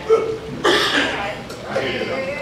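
Short, wordless vocal sounds from a voice over a microphone: a brief voiced sound at the start, then a breathy burst about half a second in, with speech resuming near the end. This is the ordinary pause-and-breath pattern of speech, not a separate non-vocal sound.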